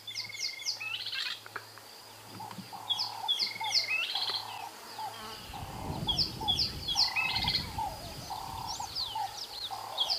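Birds calling: repeated high, quick falling chirps in short phrases over a lower note repeated at an even pace, with a low rumble about halfway through.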